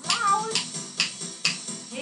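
A woman singing a children's action song, with sharp clicks of wooden rhythm sticks struck together about twice a second.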